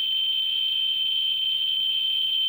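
Ludlum Model 14C Geiger counter's audio speaker giving a steady high-pitched tone, its clicks run together at about 80,000 counts per minute. The end-window probe is hovering just above an americium-241 alpha source.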